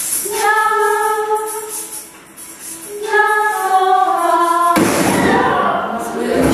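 Women's voices singing together in two long held notes, each lasting about one and a half to two seconds, the second sliding down in pitch at its end. Nearly five seconds in, the singing cuts off abruptly to louder, noisier room sound with voices.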